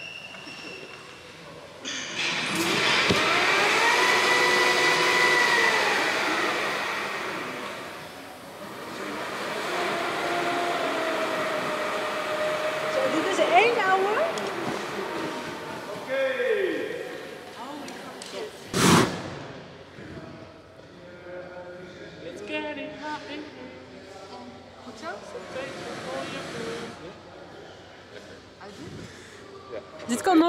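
A motorised stunt winch hauling a performer on a wire line. Its whine rises and then falls over a few seconds early on, followed later by a single sharp bang and some voices.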